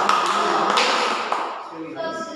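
A boy speaking in a hall, partly covered by a loud, noisy run of tapping that fades out about a second and a half in.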